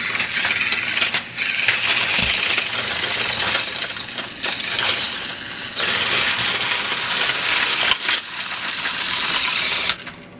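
Battery-powered Trackmaster toy engine (Whiff) running: its small motor and gearbox whir while the plastic wheels rattle over the toy track. It gets louder and brighter about six seconds in and stops abruptly at the end.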